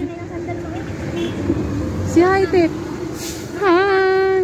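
A high voice, a child's or a woman's, calling out in drawn-out sung tones: a short rising-and-falling call about halfway through, then a longer held call near the end, over a low steady background rumble.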